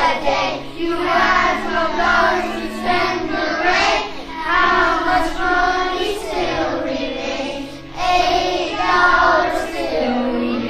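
A group of children singing a song together over a backing accompaniment.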